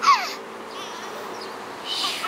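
Toddler squealing while being lifted into the air: a loud high-pitched squeal that falls in pitch right at the start, and another short squeal near the end, over a faint steady hum.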